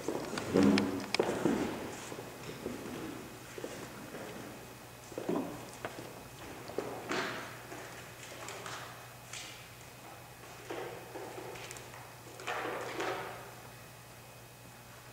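Scattered thumps, creaks and rustles of pianists settling at a grand piano before playing: the piano bench being adjusted, with a cluster of knocks in the first two seconds, then occasional handling noises, over a steady low hum.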